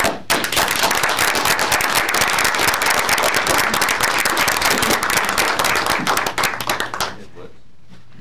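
A room audience applauding, many hands clapping steadily for about seven seconds before it dies away.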